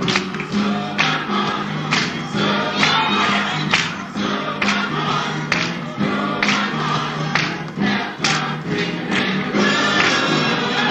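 Gospel music: a choir singing over instrumental backing, with a steady beat a little under a second apart.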